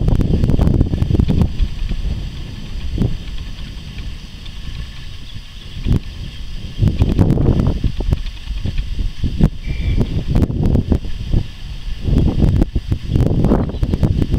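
Wind buffeting the camera's microphone in irregular gusts, a loud low rumble that swells and drops, with a brief high blip about nine and a half seconds in.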